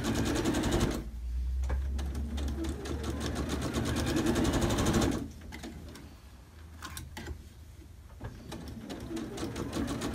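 Electric domestic sewing machine stitching a curved quilt seam in stop-and-go runs: it sews steadily for about five seconds, stops for a few seconds with a few clicks while the fabric is handled and turned along the curve, then starts stitching again near the end.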